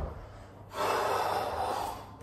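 A man's heavy breath out, one long unpitched exhale starting under a second in and tailing off, winded after a set of weights.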